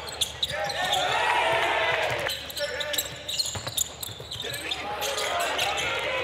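Basketball game sounds in a near-empty arena: the ball bouncing on the hardwood court with repeated sharp knocks, and voices calling out on and around the court.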